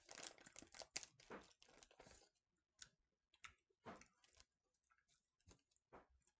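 Faint chewing of a Starburst jelly bean: a quick run of soft mouth clicks for the first two seconds or so, then only occasional ones.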